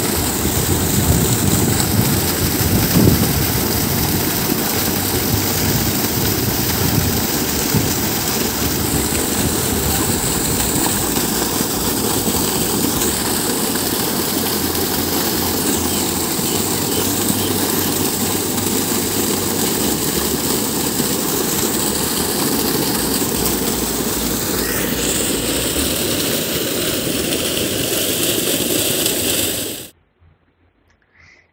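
Water rushing out of an irrigation pump set's outlet pipe and splashing onto the ground, a loud steady gushing that cuts off suddenly at the end.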